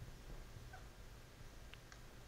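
Very quiet room tone with a low hum, broken by faint dry-erase marker strokes on a whiteboard: a brief faint squeak about a third of the way in and two light ticks near the end.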